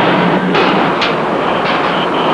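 Silo elevator's electric warning bell ringing continuously while the elevator moves, over a dense clatter of machinery: quite a racket.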